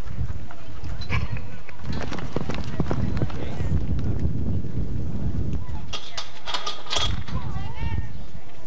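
Horse galloping on arena dirt: a run of dull hoofbeats over a steady low rumble, with voices calling out near the end.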